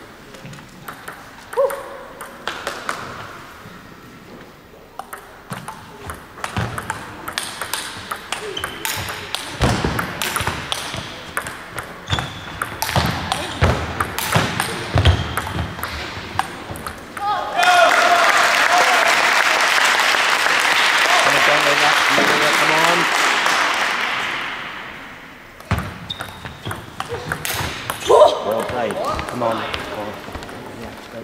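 Table tennis ball clicking off bats and table: a few bounces, then a rally of quick, sharp ticks lasting about ten seconds. Applause follows for about seven seconds after the point ends, and then a few more clicks.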